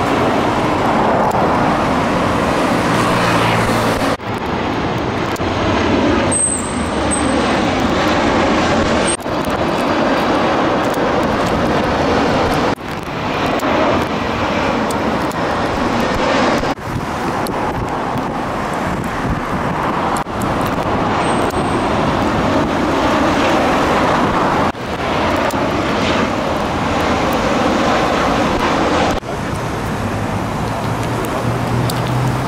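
Loud, steady roar of a low-flying Airbus A320 jet airliner on approach with its landing gear down. It is followed by similar steady outdoor traffic and aircraft noise in short stretches that break off abruptly about every four seconds.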